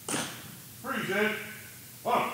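A man shouting drill commands to a color guard: a short sharp call at the very start, then a longer drawn-out call about a second in.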